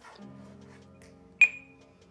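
A Zebra TC51's barcode scanner gives one short, high beep about a second and a half in, the good-read signal as it decodes a barcode. Soft background music plays under it.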